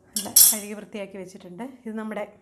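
A steel plate clinks and scrapes against the kitchen counter about half a second in, the loudest sound here, while a woman talks.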